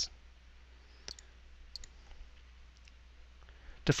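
A few faint, short clicks of a computer mouse, spaced over a couple of seconds, over a low steady hum.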